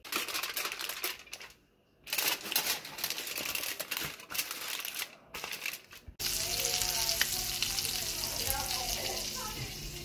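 Aluminium foil being crinkled and folded by hand into a packet, in irregular crackling bursts with brief pauses. About six seconds in it changes abruptly to a steady rush of tap water running into a kitchen sink.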